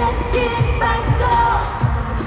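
K-pop dance song played loud through an arena sound system, with a female group's sung vocals over a heavy bass beat, heard from the audience.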